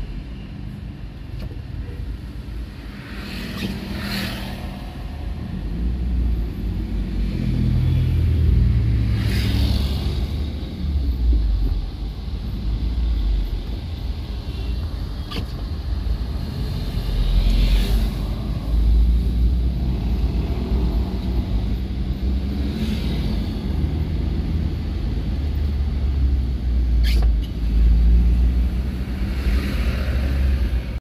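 Low, steady engine and road rumble heard from inside a car's cabin as it moves slowly in traffic on a wet road, swelling now and then, with a few short hisses.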